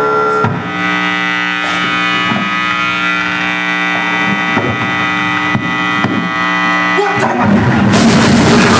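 A live band holds a sustained, steady amplified drone of many held tones, with a few scattered drum hits. Shortly before the end the full band comes in loudly with drums.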